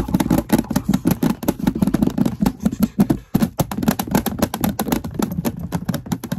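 Fast, aggressive ASMR tapping and scratching close to the microphone: a dense, rapid run of taps, several a second.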